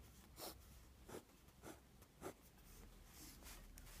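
Steel calligraphy nib of a fountain pen (0.8 mm) scratching faintly across paper in several short strokes.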